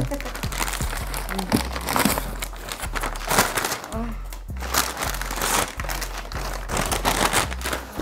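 Christmas wrapping paper being torn and crumpled off a large gift box, a dense run of irregular rips and crinkling rustles.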